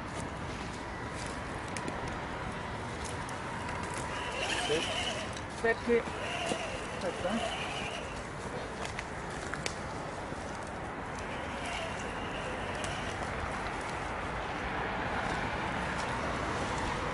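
Radio-controlled scale crawler truck's small electric motor and drivetrain giving a faint steady whine as it crawls through grass and dead leaves, with scattered light clicks from the terrain. Voices talk briefly in the background around the middle.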